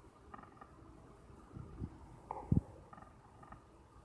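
Handling noise on a handheld phone's microphone: a few low thumps, the loudest about two and a half seconds in.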